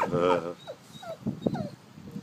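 A dog whining, a few short high whimpers in quick succession.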